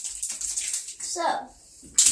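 Dry Orbeez water beads rattling and skittering on a bathtub floor as hands sweep them about, a dense patter of tiny clicks through the first second. A child's short word follows.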